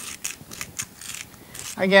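Hand salt grinder being twisted to grind salt crystals: a run of dry, crunching clicks, several a second, stopping near the end.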